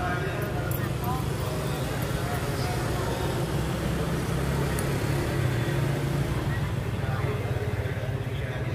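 Street market ambience: people talking nearby over a steady low motor hum.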